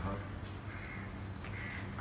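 Two brief bird calls, caw-like, about half a second and a second and a half in, over a steady low hum.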